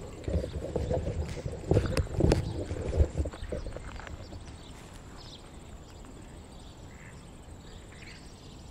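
Irregular thumps and scuffing close to the microphone for the first few seconds, then a quiet open-air ambience with a few faint, distant bird chirps.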